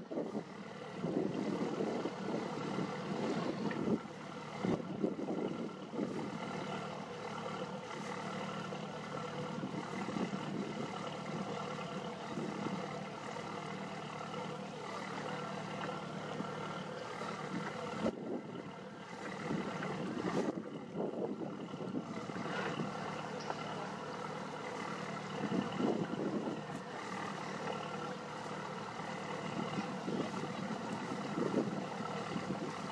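A boat's engine running steadily, a low hum that holds at one pitch.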